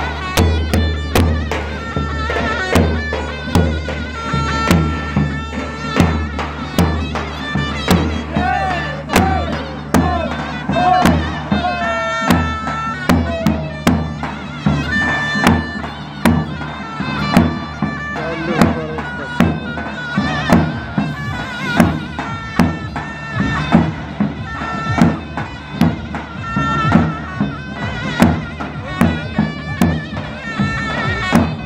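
Zurna and davul playing a halay dance tune outdoors: a loud, reedy double-reed melody with quick ornamented turns, over drum strokes that fall at an even beat.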